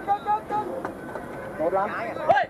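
Several players' voices shouting and calling to each other across the football pitch during play, overlapping and partly distant.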